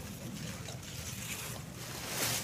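Leafy maize stalks rustling as they are tossed and gathered, a steady noisy hiss with wind on the microphone.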